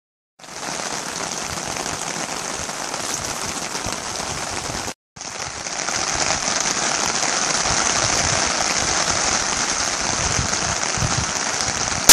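Steady rain falling on a fabric pop-up canopy overhead, an even hiss that drops out for a moment about five seconds in and comes back a little louder.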